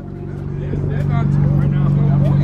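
A car stereo subwoofer in a home-built box, playing a deep, steady bass that grows louder, with faint voices behind it.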